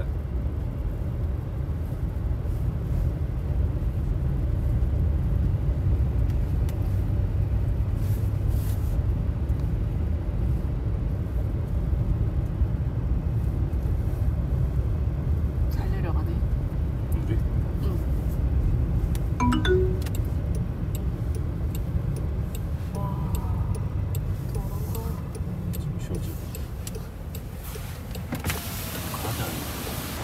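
Steady low rumble inside a Land Rover Defender's cabin as it drives slowly on a snow- and ice-covered road: tyre and engine noise. The noise thins and turns hissier near the end.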